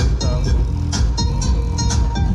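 Music with heavy bass and a steady beat playing loud through a home-built multi-speaker sound box driven by a 1200 W amplifier.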